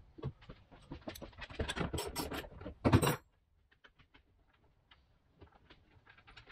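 Hands working on a car's rear body panel: a run of clicks, scrapes and rattles, busiest in the middle, ending in one loud knock about three seconds in, then only a few faint ticks.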